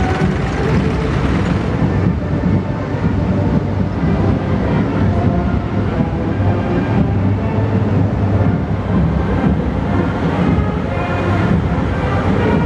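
A column of heavy military vehicles, tracked launchers and then multi-axle rocket-launcher trucks, driving past with a steady, loud engine and road rumble.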